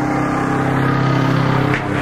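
A motor running steadily nearby, a constant engine-like hum that holds one pitch. A short rushing sound comes near the end.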